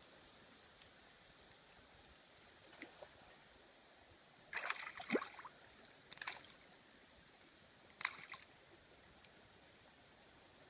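A few faint, short splashes and sloshes of water in a small creek: a cluster about halfway through, another a second later and a last one near the end.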